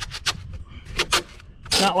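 A few short scuffs and rubs of a hand on an expanded-polystyrene ICF foam block, then a man starts speaking near the end.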